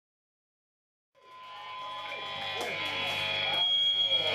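Live rock venue sound fading in about a second in and growing louder: a steady high ringing tone over voices and a few small clicks from the stage, as the band gets ready to play.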